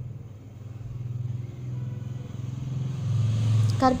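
A low, steady mechanical rumble, like an engine, that swells louder about three seconds in.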